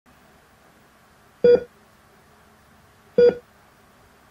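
Hospital heart monitor beeping: two short electronic beeps about a second and three-quarters apart.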